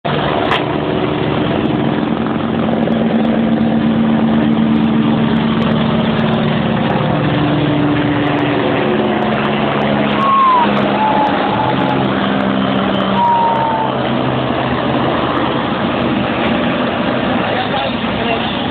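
Police helicopter flying low overhead, a loud steady drone of rotor and engine whose pitch steps down about halfway through as it passes.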